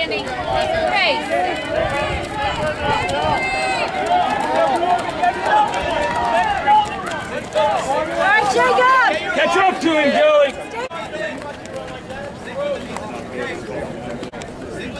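Spectators shouting and cheering at passing runners, many voices overlapping. The shouting drops off abruptly about ten seconds in, leaving quieter scattered voices.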